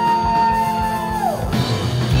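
Live pop-rock band playing. A female singer holds one long high note for about a second and a half, sliding up into it and dropping off at the end, over keyboard, electric guitar and drums.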